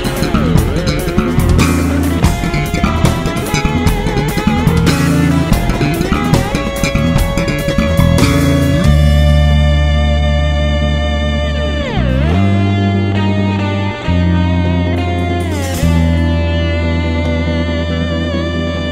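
Electric bass guitar played solo: a fast, busy run of short plucked notes for about the first nine seconds, then long ringing notes and chords. Several notes swoop down and back up in pitch, the clearest about twelve seconds in.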